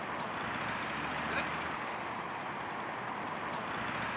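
Steady outdoor ambience of an open park: an even wash of distant traffic noise with a few faint, brief sounds over it.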